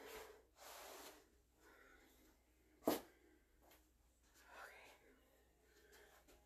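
Faint breathy exhalations of a woman exercising, with one short, sharper sound about three seconds in.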